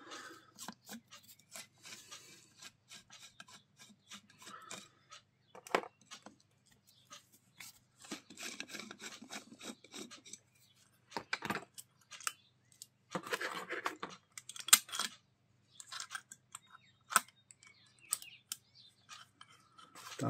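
Small metal parts and wiring being handled on an alternator while its voltage regulator is unscrewed and swapped with a screwdriver: irregular clicks, scrapes and rubbing, with a few sharper clicks and two longer spells of scraping about 8 and 13 seconds in.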